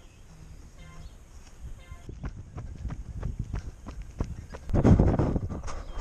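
A phone running app counting down with short beeps a second apart, then running footsteps on an asphalt road at about three strides a second. A loud rush of noise passes about five seconds in.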